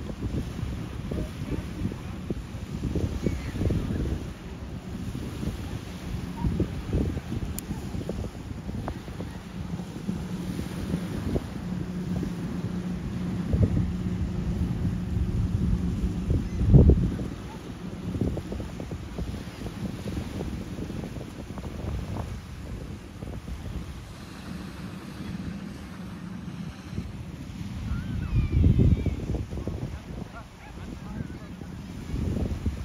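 Wind buffeting the microphone over small waves washing in, with gusts that come and go, the strongest a little past halfway and another near the end. Through the middle stretch a distant motorboat engine drones as one steady low tone.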